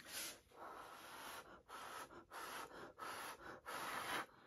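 A person blowing air onto wet acrylic paint to push it across a canvas in a Dutch pour. There are about six short, breathy puffs, each followed by a quick breath in.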